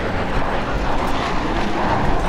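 Mazda CX-90 Turbo S's turbocharged 3.3-litre inline-six working under load as the all-wheel-drive SUV climbs a steep dirt hill, with its tyres digging into loose dirt.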